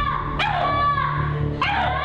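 A series of high-pitched whimpering cries about a second apart, each rising then falling in pitch, over a low steady music drone.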